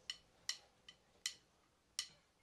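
Five faint, sharp clicks, the first four about 0.4 s apart and the last after a longer gap: a drummer's stick count-in just before the band comes in.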